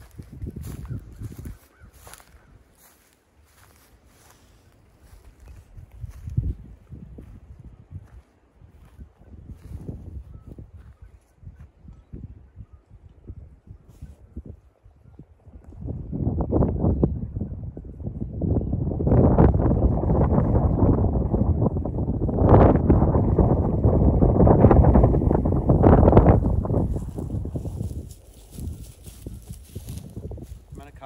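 Footsteps and rustling through dry grass and brush close to the microphone. They are faint and intermittent at first, then loud and continuous for about ten seconds from around the middle.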